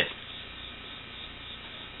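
Steady low hum and hiss of background noise with no distinct sounds in it.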